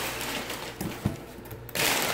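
Crumpled brown kraft packing paper rustling and crinkling as it is handled and pulled from a cardboard shipping box, with a few light knocks and a louder burst of rustling near the end.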